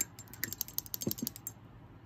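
Rapid light clicking, about a dozen clicks a second, that stops after about a second and a half: a paintbrush rattled against a plastic water cup as it is rinsed.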